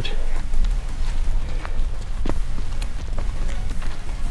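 A few scattered footsteps on a wet paved street over a steady low rumble.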